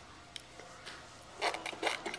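Wet mouth sounds of a toddler biting and chewing a mouthful of banana: a few soft clicks, then a louder run of smacking in the last half second.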